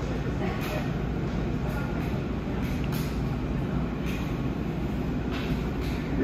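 Metal spatulas scraping across a stainless-steel cold plate as ice cream is spread flat for rolled ice cream, in short strokes about once a second, over a steady low rumble.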